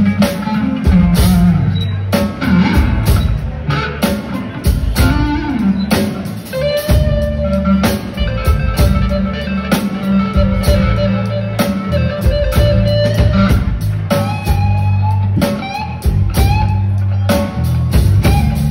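Live rock band playing an instrumental passage with no singing: electric guitars holding sustained notes over a bass line, with steady drum-kit hits.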